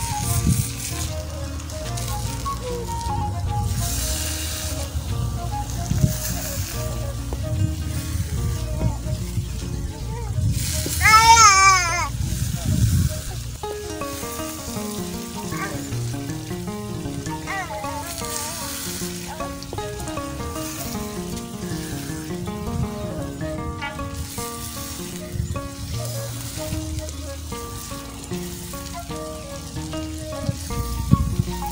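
Background music with a melody over the sizzle of eggs frying in tomato in a metal wok, stirred with a wooden spoon. A loud wavering high note sounds briefly about eleven seconds in.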